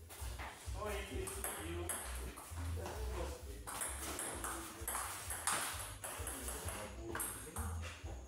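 A table tennis ball clicking as it is struck back and forth by rubber paddles and bounces on the table during a rally, with people talking in the background.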